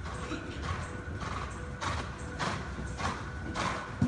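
Horse cantering on sand arena footing: dull hoofbeat thuds in a regular stride rhythm, a little under two a second, growing louder as the horse comes close.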